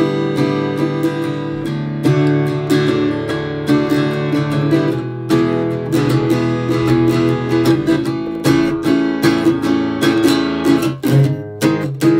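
Gretsch G9500 Jim Dandy parlour acoustic guitar, a small laminated basswood body with steel strings, strummed in a continuous run of chords. Its tone is thin and a bit brittle but has plenty of volume.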